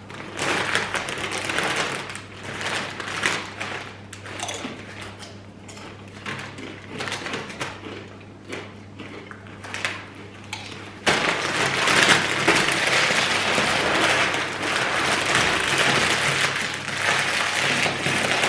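Foil-lined Doritos chip bags crinkling as they are handled and torn open, along with chips being crunched. The crinkling comes in irregular bursts at first, then turns continuous and louder about two-thirds of the way in.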